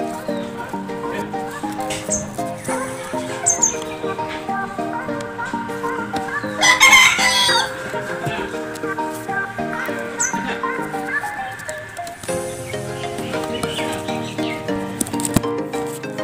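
A rooster crowing once, loudly, about seven seconds in, over background music with steady sustained notes.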